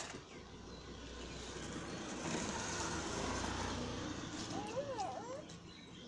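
A road vehicle passing close by, a rushing noise with a low rumble that swells to a peak in the middle and fades away. A sharp click comes at the very start, and a brief high wavering whine near the end.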